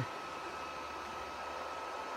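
Steady, fan-like hiss with a faint thin high tone running through it, from the electronic bench equipment running while the transmitter is keyed.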